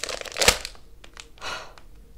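Plastic Haribo Twin Snakes gummy bag crinkling as it is squeezed, in two short rustles: one about half a second in with a sharp crackle, a softer one about a second later.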